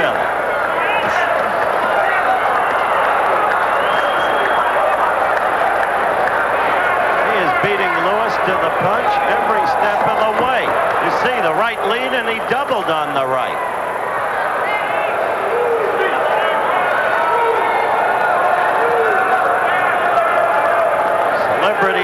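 Boxing arena crowd: a steady din of many overlapping voices, with individual shouts standing out around the middle.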